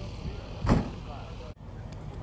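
Outdoor show-field background with wind rumbling on the microphone, broken by a single short knock about two-thirds of a second in and a brief drop-out about a second and a half in.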